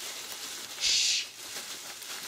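Plastic bubble wrap rustling and crinkling as it is pulled off a stepper motor by hand, with one louder swish about a second in.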